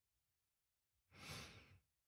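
A man sighing once, a single breath about a second in, against near silence.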